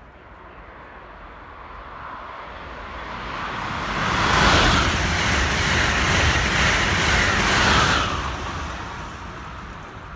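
Amtrak Acela Express high-speed trainset passing through at speed: the rushing roar of wheels on rail and air swells over about four seconds, stays loud for about four seconds while the cars go by, then fades off.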